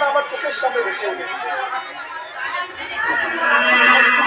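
Voices: speech with crowd chatter.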